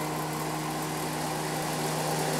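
Duct blaster fan running steadily, a constant hum with a low steady tone, while it holds the sealed duct system at its 25-pascal test pressure.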